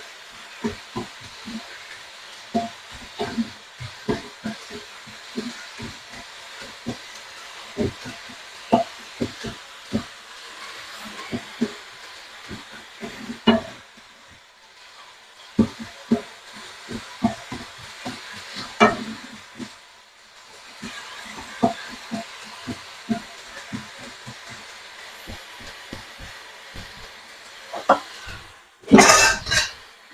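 A wooden spatula stirring and scraping chopped chicken and vegetable momo filling in a nonstick frying pan, with irregular taps against the pan over a steady sizzle. A loud clatter comes near the end.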